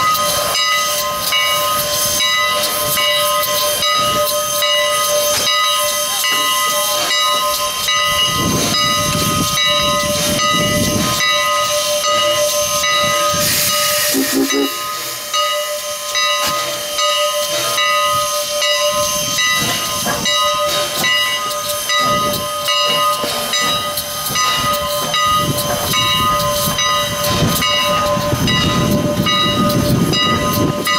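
Canadian National 89, a 1910 2-6-0 Mogul steam locomotive, hissing steam with a steady whine of several pitches, and a brief louder burst of hiss about halfway. Gusts of wind rumble on the microphone now and then.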